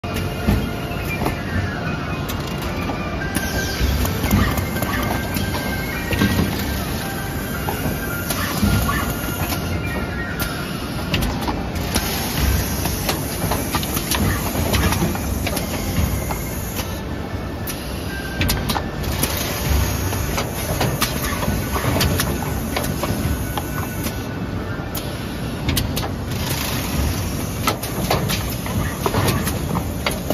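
YY-900N closure and shoulder box assembly machine running, with frequent short clicks and knocks from its moving parts. These sit over loud, steady exhibition-hall noise, with music in the background.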